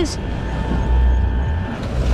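Uneven low rumble of wind buffeting the microphone, with water splashing as a harpooned swordfish thrashes at the boat's side.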